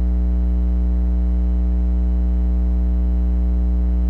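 Steady electrical mains hum, a loud low tone with a buzzing stack of overtones above it, unchanging in pitch and level.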